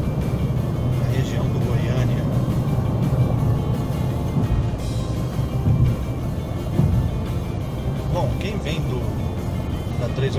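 Steady low rumble of a car's engine and road noise heard inside the cabin at highway speed, with music playing over it.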